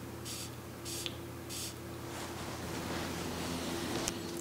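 Perfume bottle's spray atomizer pumped three times in quick succession, each a short hiss, all within the first two seconds.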